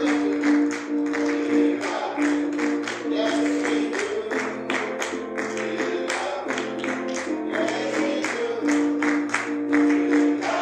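Gospel music played live in church: a keyboard or organ holds sustained chords over a moving bass line, with singing voices and a steady beat of sharp percussive strikes, about two a second.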